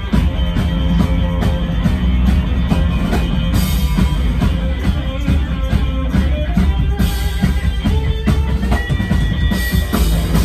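Live rock band playing an instrumental passage: electric guitar lines over a steady drum-kit beat, with cymbal crashes about three and a half seconds in, at about seven seconds, and again near the end, where the guitar holds a high note.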